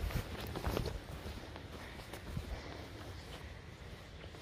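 Footsteps of a hiker walking on short dry grass, a few steps in the first second and then quieter.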